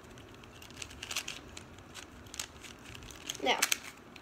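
White KungFu Dot 3x3 plastic puzzle cube being turned by hand in a quick scramble: a loose run of faint clicks and clacks as its layers turn.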